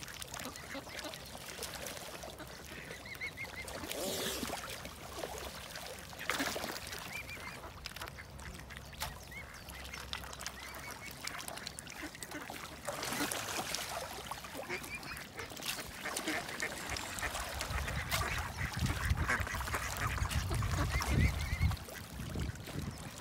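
A flock of mallard ducks quacking and dabbling in the water as they feed, with short high calls scattered through. A low rumble builds near the end.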